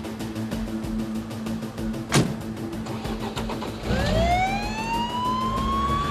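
A police car siren starts up about four seconds in, its pitch rising steeply and then levelling off into a steady wail. Before it there is one sharp thump about two seconds in, over background music with a steady low drone.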